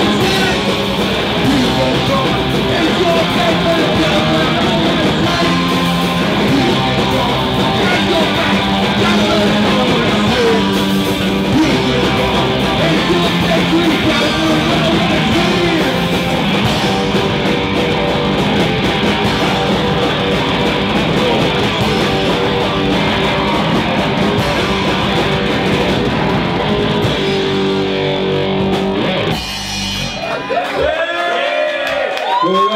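Punk band playing live: electric guitar, bass guitar and drum kit with a man singing into the microphone. The song stops near the end.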